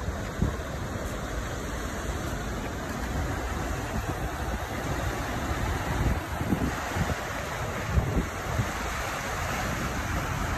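Steady rushing noise of traffic and floodwater on a flooded street, with a few low thumps of wind buffeting the microphone.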